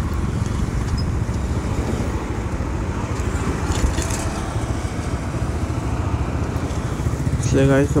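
TVS Raider 125 motorcycle's single-cylinder engine running at low road speed as the bike slows through a bend, heard as a steady low rumble with road noise over it. A man starts talking near the end.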